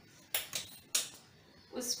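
Kitchen utensils clattering at the stove: three short, sharp knocks within the first second.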